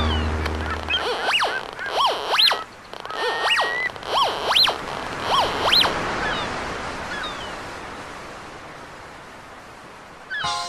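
Gulls calling, a run of loud squawks that rise and fall in pitch, over the hiss of surf. A low droning hum fades out about a second in, and the calls stop about six seconds in while the surf fades away.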